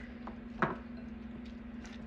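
Fingers squishing and kneading soft whipped butter with garlic and lemon zest in a glass bowl: faint soft squelches with a couple of small clicks, over a steady low hum.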